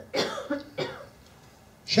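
A person coughing: three short coughs in quick succession within the first second.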